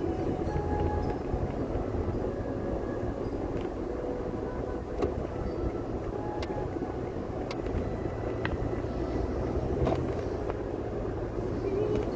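Steady road and engine noise of a moving car heard from inside the cabin, with a few faint clicks now and then.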